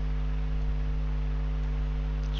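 A steady low electrical hum with a faint hiss, unchanging throughout, and nothing else.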